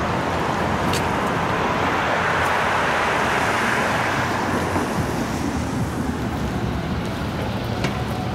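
Road traffic noise: a steady hiss of passing vehicles, swelling to a peak about three seconds in as a car goes by, then easing off.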